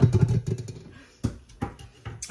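A woman's laughter trailing off, then a sharp knock about a second and a quarter in and a lighter one just after, from a metal batter disher working against the stainless mixing bowl.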